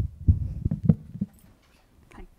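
Handling noise from a handheld microphone being set into its stand: a quick run of low bumps and thuds over the first second or so.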